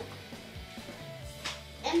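Faint background music with sustained low notes that change about a second and a half in, and a faint voice mixed in. There is a single brief click about one and a half seconds in.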